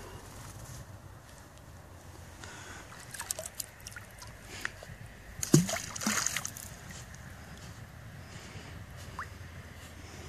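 Lake water sloshing and lapping in the shallows, with a few small splashes and a louder splashy burst about five and a half seconds in, as a small dog swims close by.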